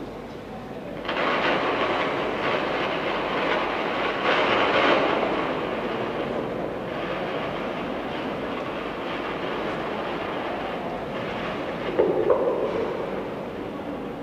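Audience applause: dense clapping that starts suddenly about a second in and slowly thins out. There is a brief louder bump near the end.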